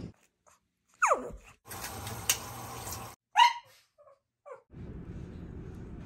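A dog giving a quick falling whine about a second in and a short, loud high yelp about halfway through, between stretches of steady background noise.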